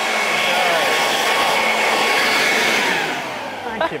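Electric leaf blower running steadily, a rushing of air with a thin whine, blowing a streamer of toilet paper into the air. It winds down in the last second.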